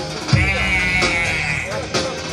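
Dance music with a beat and a long held, wavering high note through most of it.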